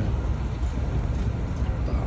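Steady low rumble of wind buffeting the phone's microphone outdoors, with no distinct event standing out.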